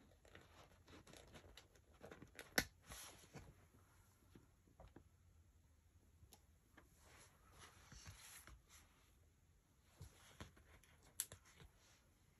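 Faint handling of paper letter stickers: small rustles and light taps as stickers are peeled off and pressed onto a photo, with a sharper click about two and a half seconds in and another near the end. Otherwise near silence.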